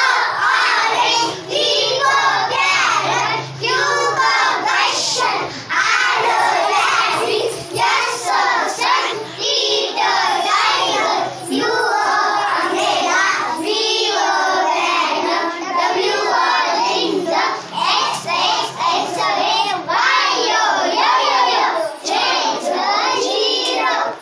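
A group of young children singing an alphabet song together, loud and continuous.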